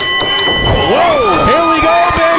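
Wrestling spectators shouting from ringside: drawn-out yells that rise and fall in pitch, overlapping one another.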